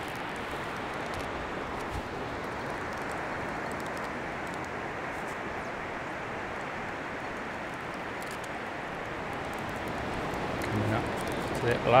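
Steady hiss of breaking surf.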